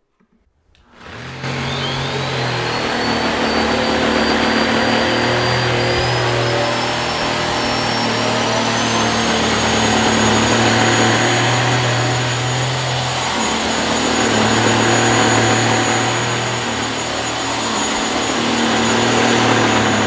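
Aspiron handheld mattress vacuum switching on about a second in and running on a mattress: a steady rush of suction with a thin motor whine that climbs in pitch over the first several seconds as the motor spins up, then holds. Under it a low hum swells and fades a few times.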